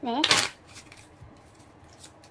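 A deck of playing cards riffle-shuffled: a short, sharp rattling burst of the cards interleaving, followed by a few faint taps.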